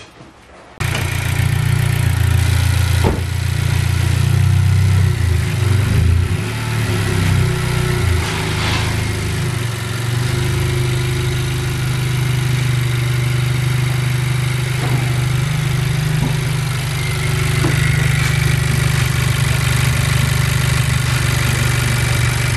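Honda Civic Si's turbocharged four-cylinder engine starting about a second in, then idling: unsteady for the first several seconds before settling into a steady idle.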